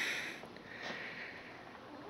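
A man's soft sniff, breathing in through the nose about half a second in, then faint room tone.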